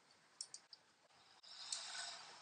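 Faint computer keyboard keystrokes: a few soft, separate clicks, then a soft hiss that swells in the last half second.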